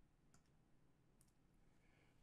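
Near silence: faint room tone with a couple of faint computer mouse clicks.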